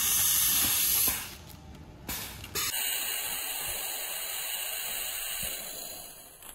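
Compressed air hissing from the pneumatics of a bag-opening machine with vacuum suction cups and air cylinders. A loud hiss cuts off about a second in, a short burst of air comes at about two seconds, then a steadier, quieter hiss runs on and fades near the end.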